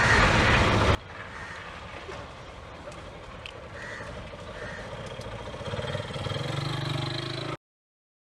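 Quiet outdoor street ambience, with a louder hiss for the first second, then a low vehicle engine hum that grows louder over the last couple of seconds before the sound cuts off abruptly.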